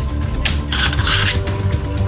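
Background music with a steady low bass line, and a brief hissing rattle about half a second in that lasts under a second.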